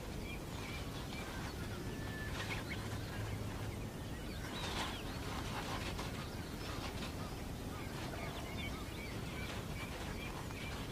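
Quiet outdoor field ambience: a steady low background hiss with faint, scattered bird chirps. A few brief, slightly louder calls come near the middle.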